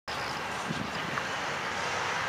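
Steady, even running noise of an approaching diesel-electric freight train, its lead locomotive a GE ES40DC, heard from a distance.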